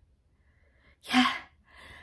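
A woman's short, breathy, exclaimed "yeah" about a second in, after a moment of near silence, followed by a faint breath.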